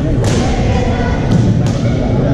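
Badminton rackets striking shuttlecocks: three sharp hits, one about a quarter second in and two close together near the end, over a steady hum of voices in the hall.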